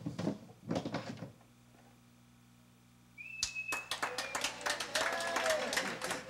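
Knocks and a clatter as a rolling drum strikes puppets and falls to the pavement. About two seconds of near silence follow, then a dense run of knocks and clatter with voices and a brief high, slightly falling tone.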